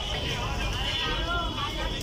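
Busy street-market noise: people talking in the background over a steady low rumble of traffic.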